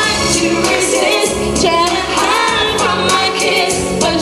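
A young woman singing a song into a handheld microphone over backing music, her voice gliding between held notes.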